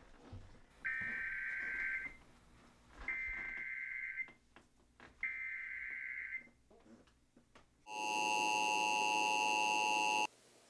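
Emergency Alert System tones from a TV: three buzzing data bursts, each a little over a second long with quiet gaps between, then a louder steady attention tone from about eight seconds in. The tones announce an emergency broadcast.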